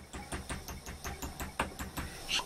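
Rapid light hammer taps, about five a second, on the sheet-metal binder attachment of a sewing machine held in a vise, bending its edge back over.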